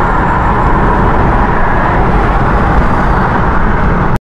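Steady road and tyre noise heard inside a car's cabin while it drives along a multi-lane highway.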